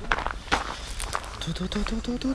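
Footsteps on a dirt path as two people walk, a few crunching steps with handheld-camera rustle and a low rumble; a voice starts near the end.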